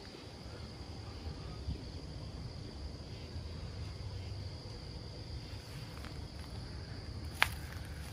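Night-time crickets chirping as a steady high trill, over a low rumble, with one sharp click near the end.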